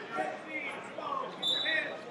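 Wrestling shoes squeaking on the mat as the wrestlers grapple, with indistinct voices of coaches and spectators in the hall. One short high squeak comes about one and a half seconds in.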